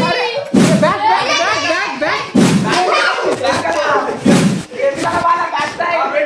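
Three dull thuds about two seconds apart as a stuffed cloth bundle is swung and strikes bodies or the floor mat, among excited shouting and laughing voices.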